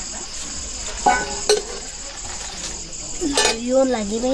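A metal spoon stirring leafy greens in a steel wok, with a light sizzle and two metal clinks about a second in. Crickets chirp steadily in the background.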